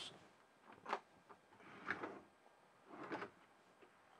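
A few faint, separate knocks and rustles, roughly a second apart: handling noise around the caravan kitchen units.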